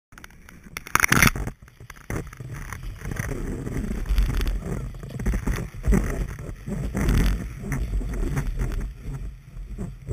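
A gloved hand rubbing and knocking against a knee-mounted action camera, loudest briefly about a second in. Then skis sliding over snow, with an uneven low rumble and swells of noise as the camera rides on the moving knee.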